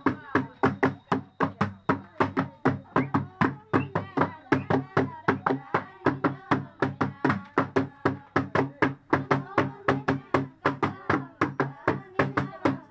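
Large metal basins beaten with sticks as makeshift drums in a fast, steady rhythm of about four strikes a second, with voices rising and falling over the beat.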